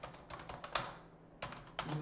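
Computer keyboard being typed on: a quick run of separate key clicks.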